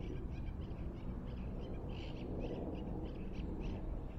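Wild birds calling with short high chirps, several a second, over a steady low outdoor rumble.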